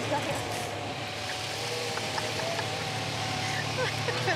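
A car pulling away and driving off, its engine and tyre noise steady and even. A thin sustained tone runs faintly above it.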